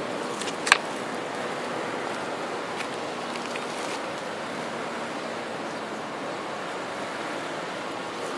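Steady outdoor background noise, with one sharp click just under a second in and a few faint ticks afterwards.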